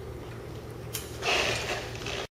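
Key turned in a zinc-alloy coupler lever lock, giving one sharp metal click about a second in as it locks, over a steady low hum. A louder rough handling noise follows in the second half.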